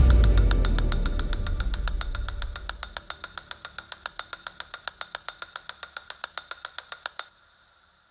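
Trailer sound design: the low rumble of a boom dying away over the first two to three seconds, under a fast, even ticking of about seven ticks a second that stops abruptly near the end.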